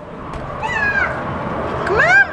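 High-pitched, meow-like cries from a young child: one falling call about half a second in, and a second call that rises and then falls near the end.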